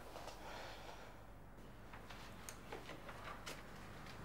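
Faint footsteps of a child walking away: a few light taps over quiet room tone.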